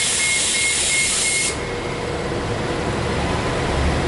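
Loud pneumatic air hiss from a city bus with a rapid high-pitched warning beep pulsing over it. Both cut off suddenly about a second and a half in, leaving low traffic noise.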